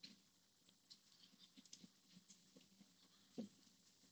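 Near silence with a few faint computer-mouse clicks as faces are picked one at a time, and one slightly louder knock about three and a half seconds in.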